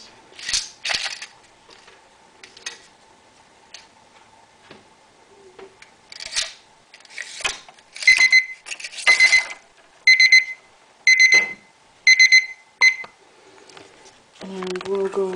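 A digital kitchen timer beeps high and evenly about once a second, five times and a short sixth, starting about eight seconds in, as it is set for a five-minute bleach soak. Before that, a few brief rattles and splashes of plastic cage joints going into the bath.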